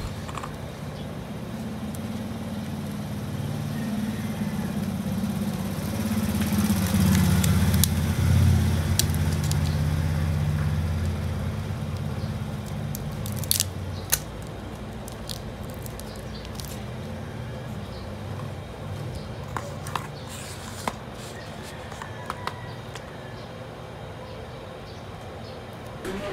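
Low engine hum, as of a passing vehicle, that swells over several seconds and then fades. A few sharp clicks come through it as a plastic pry pick works around the screen edge of a Samsung Galaxy J7 Pro.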